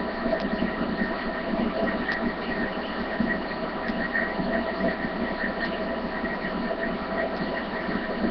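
Steady electrical hum and hiss picked up by a webcam microphone, with a few faint small ticks.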